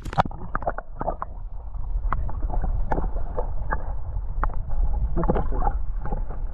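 Water heard through an action camera held under the water: a steady low muffled rumble of moving water with many small clicks and knocks from the camera being handled, the higher sounds dulled by the water.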